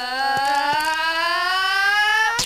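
A cartoon sound effect: one long held note, rich in overtones, sliding slowly and steadily upward in pitch, with a few faint ticks in the first second.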